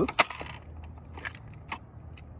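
A sharp plastic click as the hydrostatic release unit is pushed into the EPIRB's plastic bracket, followed by a few faint clicks and taps of handling.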